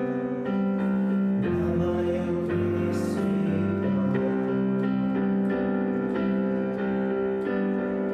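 Digital piano playing a slow worship-song accompaniment, held chords with the bass note changing about once a second.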